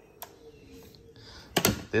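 Handling knocks from the plastic housing of a DeWalt DCE512B battery fan as it is grabbed and tilted: a light click shortly in, then a quick cluster of knocks near the end.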